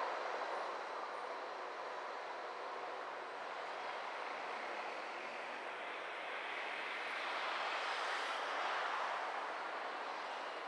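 Car driving on a city street, heard from inside the cabin: a steady rush of road and tyre noise that swells a little louder about seven to nine seconds in.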